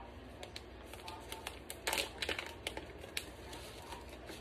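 Paper and packaging handled close by: a booklet being opened and its pages leafed, giving light rustling and scattered small clicks, with a louder crinkle about two seconds in.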